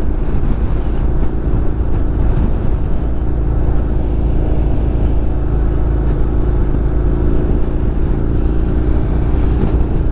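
Honda NC750X motorcycle's parallel-twin engine running at a steady cruise, with heavy wind and road noise on the bike-mounted microphone. There is no change in pitch.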